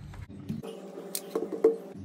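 Handling noise from a disassembled VW RCD head unit: a few light clicks and ticks of its metal chassis and plastic front panel being moved and gripped by hand, the loudest near the end.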